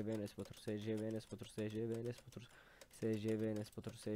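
Computer keyboard keys clicking as the same short line is typed over and over. Over it, a voice chants one short phrase in a flat, droning tone about once a second, with a short pause a little after the middle.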